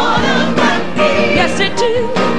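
Gospel music: sung vocals over choir and band. Near the end there is a brief break as one song gives way to the next.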